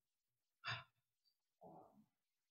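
Near silence in a pause in a man's speech, broken by two brief, faint breath sounds: a short one a little under a second in and a softer, lower one near the end.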